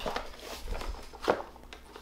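Cardboard mailer box being opened by hand: a few short scrapes and rustles of the flaps, the clearest a little past the middle.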